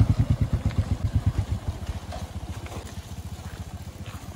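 Motorcycle engine running at low speed on a dirt track, its exhaust beating in an even, fast pulse; loudest at first, then fading as the bike pulls away.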